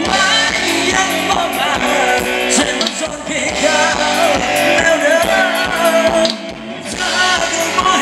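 Thai ramwong dance song played by a live band, with a singer over a steady beat; the music dips briefly about six seconds in.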